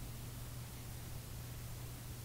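Faint steady background hiss with a low, even hum; no distinct sound event.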